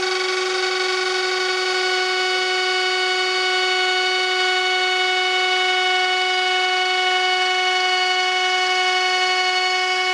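Router running with a steady high whine, its bit cutting a spiral into a wooden ornament blank turning on the lathe, with a hiss of cutting under the whine.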